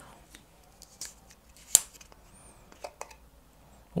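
Cap being twisted open on a glass vodka bottle: a handful of sharp clicks spread over a few seconds, the loudest about two seconds in.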